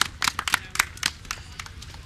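A small group of players clapping their hands, scattered and out of time, thinning out in the second half.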